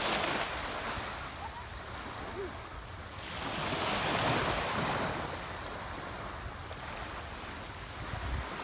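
Small waves washing in over shallow sea water, with wind on the microphone: a steady rush that swells up about three seconds in and eases off again.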